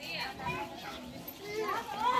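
Several children's voices chattering and calling out indistinctly at a moderate level, with no clear words.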